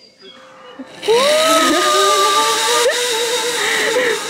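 Zipline ride: from about a second in, the trolley runs along the steel cable with a loud, steady rushing noise, over a long drawn-out cry that rises at first and then holds.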